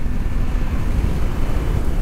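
A 2020 Honda Africa Twin's 1,084 cc parallel-twin engine running steadily at road speed, under heavy wind rush on the microphone.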